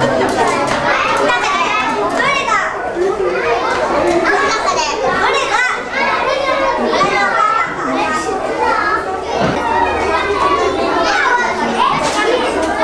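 Many children's voices chattering and calling out at once, with overlapping talk throughout.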